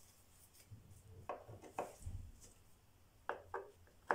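A screwdriver clicking against the plastic air-filter housing cover and its screws as they are checked for tightness: a few faint taps, two a little after one second and two more after three seconds.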